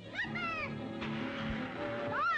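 A cartoon creature's two short, high, meow-like cries that rise and fall in pitch, one right after the other at the start, over orchestral score. A short hiss follows about a second in.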